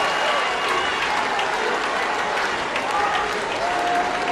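A large indoor audience applauding steadily, with scattered voices mixed into the clapping.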